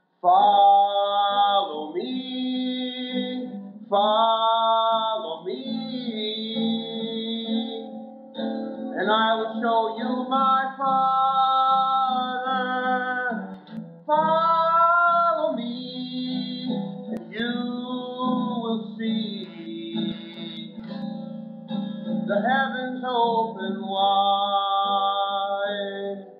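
A solo voice singing a slow song to acoustic-electric guitar accompaniment, with long held, wavering notes, through the room's microphone and speakers. The sound drops out for a moment at the very start.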